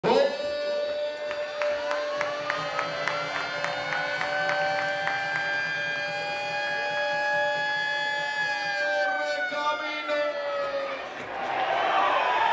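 Stadium crowd with several long, steady siren-like tones from fans' noisemakers that slide slowly up and down in pitch and fade out near the end. A drum beats about three times a second during the first few seconds.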